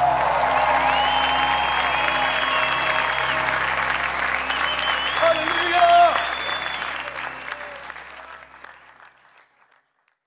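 Audience applauding and cheering after a live worship song, over a held low keyboard chord. Everything fades out over the last couple of seconds.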